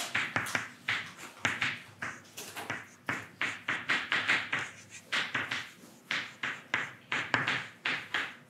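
Chalk writing on a blackboard: a quick, irregular run of taps and short scratchy strokes, several a second, as the letters are written.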